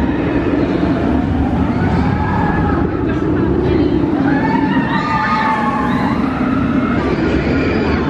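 Indistinct voices and chatter of people close by over a steady low rumble of wind buffeting the microphone.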